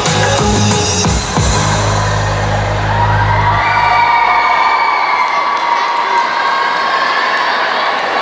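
Music with a heavy bass line stops about halfway through as an audience cheers and whoops at the end of the dance.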